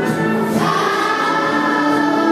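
Children's choir singing, holding long notes, with a new phrase starting about half a second in.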